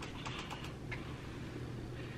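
A few light clicks and taps in about the first second, from a makeup palette and brush being handled, over a faint steady low hum.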